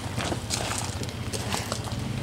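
Footsteps on loose gravel, a run of irregular crunching steps.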